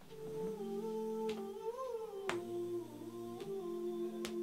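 Wordless humming or choir-like voices holding slow, sustained chords that shift pitch every second or so, with a few faint clicks.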